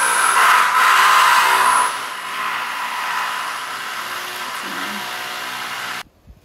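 Steady drone of a small engine running close by, like someone mowing. It is loudest for the first two seconds, then settles a little lower, and cuts off suddenly at the end.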